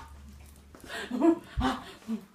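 Two short wordless vocal calls, one about a second in and another near the end, with a low thump just before the second.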